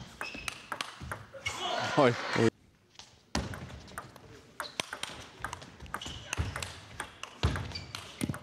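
Table tennis rally: a celluloid ball struck back and forth, sharp clicks off the bats and the table in quick succession. A man's voice breaks in briefly about two seconds in.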